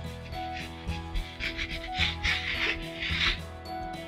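Chalk rubbing on a chalkboard in several short strokes, each lasting up to about a second, over steady background music.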